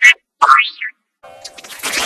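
Cartoon sound effects: a short burst, then a quick boing-like glide that rises and falls in pitch about half a second in. Just past one second, a dense, noisy layered sound with a steady hum underneath starts and builds up.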